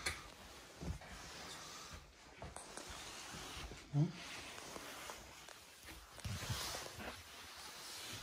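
A few soft footsteps and scuffs in a quiet room, with a faint hiss between them.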